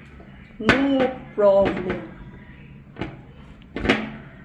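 A woman's voice makes two short, unworded vocal sounds in the first two seconds, followed by a sharp knock near the end.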